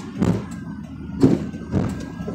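Steady road and engine noise inside a moving car's cabin, with three short dull thumps: one just after the start, one about a second and a quarter in, and one near the end.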